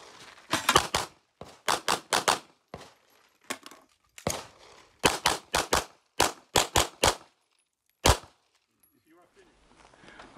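Competition pistol fire from a Sig P320 X-Five: about two dozen rapid shots in quick pairs and short strings with brief pauses between, ending with a single shot about eight seconds in.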